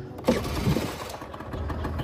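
1998 Honda Gyro Up's 50cc two-stroke engine starting about a quarter second in and settling into a steady idle.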